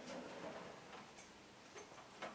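A kitchen drawer pulled open, faint sliding with a few small clicks.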